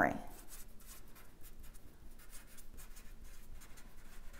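Marker pen writing on a flat drawing surface: a run of faint, short, irregular strokes as two words are written out.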